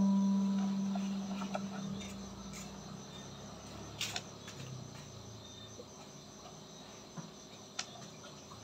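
The last low note of the background music fades out over the first few seconds, leaving a faint, steady high chirring like crickets, with a few soft clicks.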